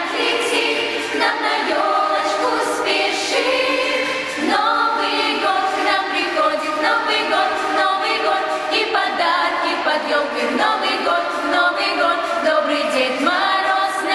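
Girls' choir singing a New Year song together, with long held notes that move from pitch to pitch in phrases.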